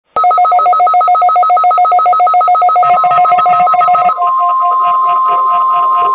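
Several weather alert radios sounding their alarms together: rapid two-pitch electronic beeping, about seven beeps a second. From about three seconds in a steady high tone joins and becomes loud about four seconds in: the NOAA Weather Radio warning alarm tone that opens the weekly test broadcast.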